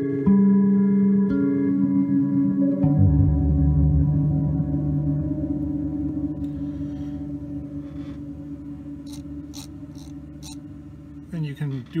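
Guitar played through an Empress ZOIA pedal running the Quark Stream micro-looper patch, with the delay mix down so the loops replay right after they record. The result is held, looped tones that step to new pitches a few times in the first three seconds, then die away slowly with trailing glitches.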